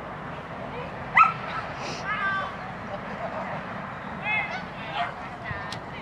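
A dog barking and yipping in a few short, high-pitched calls, the loudest and sharpest about a second in.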